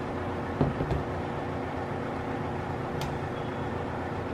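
Handling knocks from a Divoom Ditoo-Plus speaker's plastic case being moved on a tabletop: a few soft knocks a little under a second in, then one light click near three seconds, over a steady background hum.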